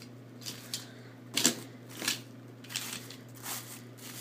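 Hands rummaging through a box of die-cast toy cars: a string of about six or seven short rustles and clicks, spaced irregularly, over a low steady hum.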